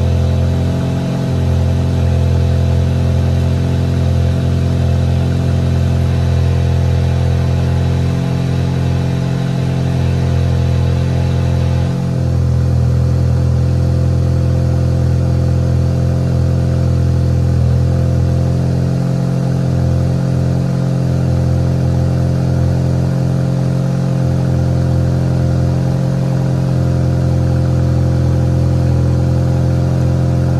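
Volkswagen Passat 1.8 TSI turbocharged four-cylinder idling steadily just after a cold start, heard through an exhaust with the rear muffler deleted. About twelve seconds in, the sound changes slightly and loses some of its upper hiss.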